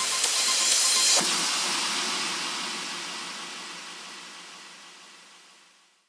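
End of a progressive house track: the kick drum has dropped out, leaving a wash of white noise that thins about a second in and then fades away to silence.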